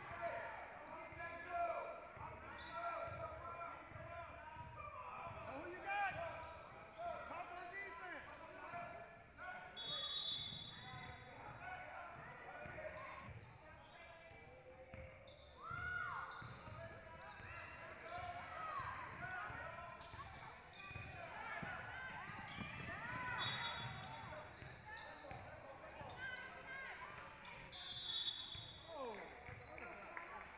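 Basketball being dribbled on a hardwood gym floor, with sneakers squeaking and the indistinct voices of players calling out, echoing in a large gym.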